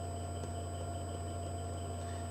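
Steady low electrical hum with faint hiss, unchanging throughout.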